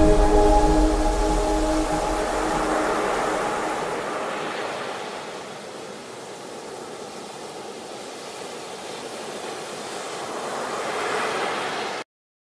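Ocean surf: waves breaking and washing up the shore, the rush swelling and easing, dipping about halfway through and building again near the end. The last notes of soft music fade out under it over the first few seconds.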